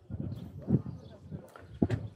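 Faint, indistinct talking, with a couple of short clicks near the end.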